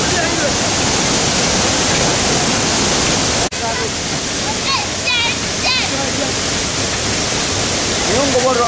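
Loud, steady rush of a waterfall pouring over rocks. About three and a half seconds in, it breaks off abruptly and gives way to the rushing of a shallow rocky stream being waded, with a few faint voices calling over the water.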